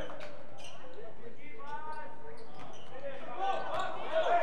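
Basketball bouncing on a hardwood gym floor during live play, in short knocks, with voices from the players and crowd.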